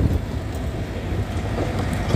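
Mitsubishi MM35 mini excavator's diesel engine running steadily as the boom and bucket dig into a dirt pile.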